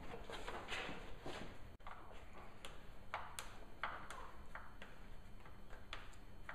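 Faint, scattered light clicks and taps of hand work on a motocross bike's fuel tank mounting: a bolt, rubber and hand tool being handled against the plastic tank.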